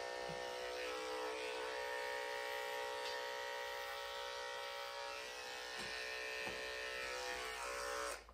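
Corded electric dog-grooming clippers running steadily at one pitch as they clip a Schnauzer's face short along the lip line.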